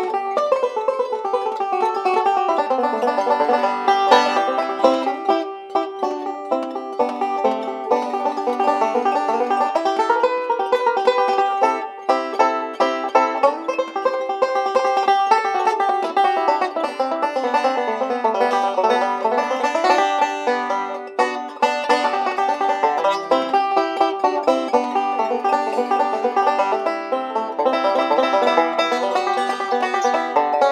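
Five-string banjo playing an instrumental tune in a steady stream of rapid picked notes.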